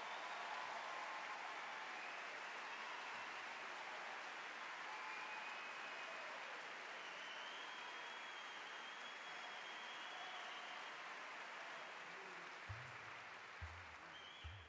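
Faint, steady noise with a few soft low thumps near the end.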